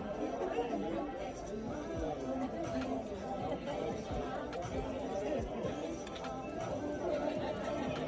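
Restaurant background chatter: many diners' voices overlapping into a steady murmur, with music faintly underneath.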